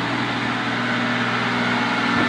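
Snowplough truck's engine running steadily as the truck pushes snow with its front blade.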